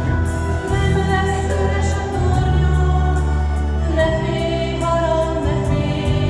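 A group of voices singing a song over an accompaniment with held bass notes and a steady light beat.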